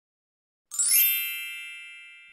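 A chime sound effect struck once, a little under a second in, ringing with several high steady tones that fade away slowly.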